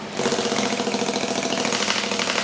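Electric desk fan running with sandpaper fixed to its blades, held against the bare skin of a leg. A steady motor hum sits under a fast, even rasping buzz as the sandpaper strikes the skin.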